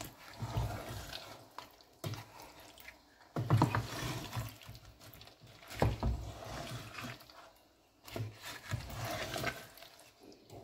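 Wooden spatula stirring a thick tomato stew of meat and fish in a pot: irregular wet squelching and sloshing, with a few sharp knocks of the spatula against the pot.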